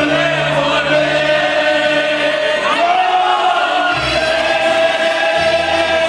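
A singer in a charro suit sings live into a microphone over amplified Latin backing music, holding long notes and stepping up in pitch about three seconds in.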